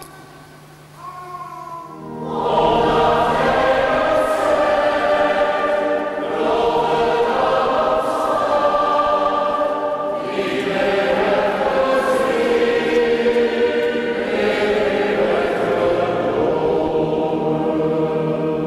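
A group of voices singing a hymn together in a church, coming in loudly about two seconds in after a brief single sung phrase.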